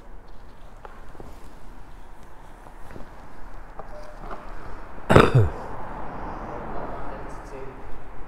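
A short, loud vocal sound from a person about five seconds in, falling in pitch, like a grunt or burp. Around it, only faint background noise with a few small clicks.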